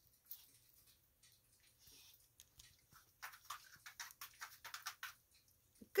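African grey parrot nibbling a piece of banana bread held in its foot: faint quick beak clicks and crumbly bites, one early and then a run of them in the second half.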